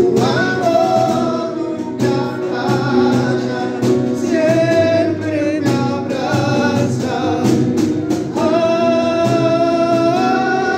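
A man singing a worship song with long held notes, accompanied on a Roland E-X20A keyboard and amplified through a PA system.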